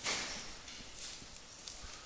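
Faint taps and scratches of a stylus writing on a tablet screen, a few light ticks over a low steady hiss.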